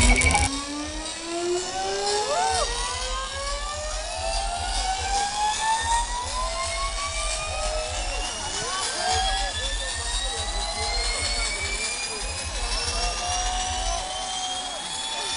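Electronic dance music breakdown on a festival sound system: about half a second in the beat drops out, and a synth riser climbs slowly and steadily in pitch. The crowd whoops and cheers over it.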